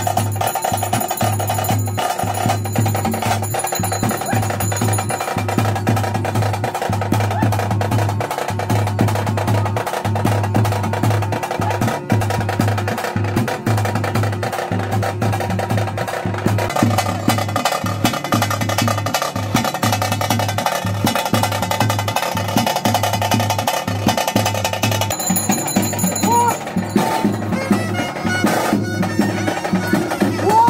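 Traditional daiva kola ritual music: fast, continuous drumming with a melody played over it.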